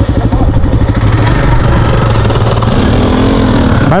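Motorcycle engines idling with a steady, rapid beat; near the end one bike's engine picks up as it rides off.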